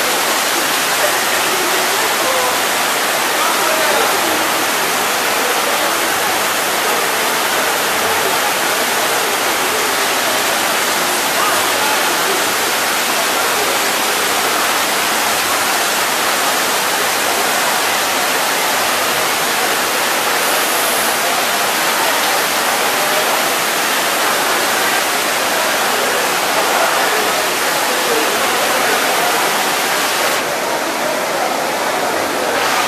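Heavy downpour: loud, steady hiss of rain falling hard, unchanging throughout.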